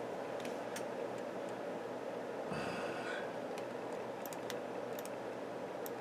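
Steady whir of a computer cooling fan, with a scattered handful of sharp mouse-button clicks.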